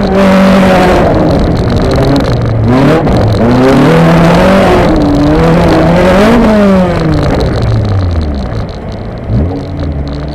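Honda Civic autocross car's engine heard from inside the stripped cabin, pulling hard with its revs climbing and dropping again and again. About seven seconds in the revs fall away and it goes quieter, with two short blips of revs near the end.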